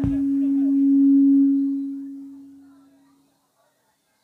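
A single low, steady musical tone swells, peaks about a second in and fades out by about three seconds in. A deep thump, like a drum hit, comes at the very start.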